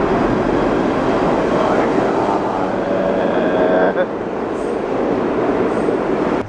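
New York City subway train pulling into the station: a loud, steady rumble of steel wheels on the rails, with a whine held from about two to four seconds in.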